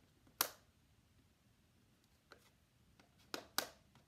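Small letter tiles clicking against a metal baking sheet as they are picked up and set down. There is one sharp click about half a second in, a faint one past two seconds, and two in quick succession near the end.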